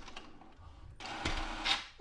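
HP DeskJet 3772 inkjet printer's paper-feed mechanism starting about a second in, a motor running as it takes up a sheet: the printer beginning to print its network configuration page after the two-button combination is held.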